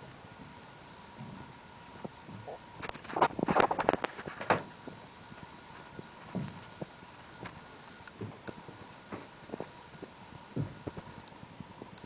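Footsteps and scuffs on the bare, stripped floor of a gutted bus body: irregular knocks and clicks, with a louder run of steps and scrapes about three to four and a half seconds in.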